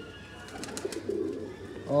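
Domestic pigeons cooing, with a few light clicks.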